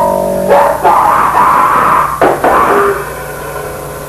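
Lo-fi noisecore recording: distorted guitar chords break off about half a second in into a loud, rough blast of noise. There is a second sharp hit about two seconds in, then it dies down toward the end, leaving a low amplifier hum.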